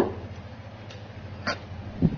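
Kitchen knife knocking on a wooden chopping board while a green chili is cut and deseeded: two sharp knocks about a second and a half apart, over a steady low hum.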